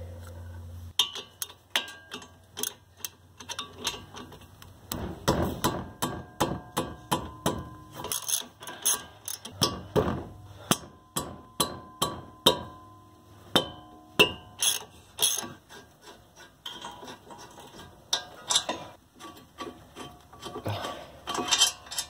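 A ratchet wrench clicking and metal tools clinking as the two 17 mm bolts holding the front brake caliper bracket are worked loose and backed out. The clicks come in irregular runs throughout, with scattered sharper clinks.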